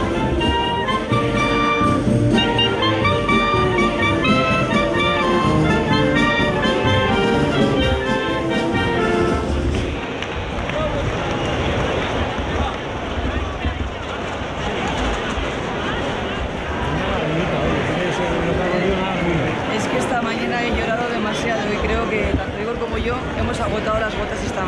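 A brass band playing a lively melody over a large crowd for about ten seconds, after which the band fades and the steady noise of many voices in the crowd takes over.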